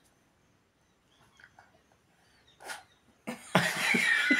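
A short puff of breath about two and a half seconds in, then a loud, breathy cough-like burst of voice starting near the end, from a toddler miming smoking a beedi.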